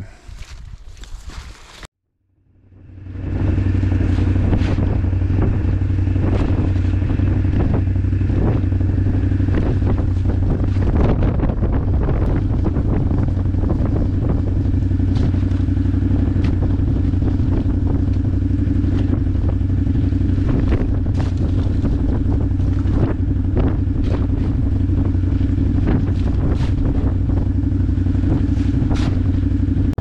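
A farm vehicle's engine running at a steady speed, coming in about three seconds in, with scattered knocks and rattles over the drone.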